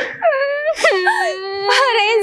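A woman wailing in grief: drawn-out cries that swoop in pitch, then one long held, wavering wail from about a second in.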